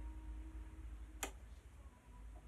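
A single light click about a second in, as a paintbrush knocks against the paint tray while watercolour is picked up, over a low steady hum.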